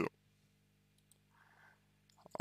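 A pause in a man's speech: near silence after the tail of a spoken word, with a faint soft sound about one and a half seconds in.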